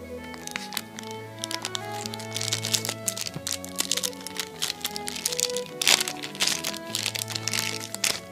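Thin clear plastic bag crinkling and crackling as it is worked open by hand, with many sharp crackles from about a second and a half in, loudest near the end, over background music.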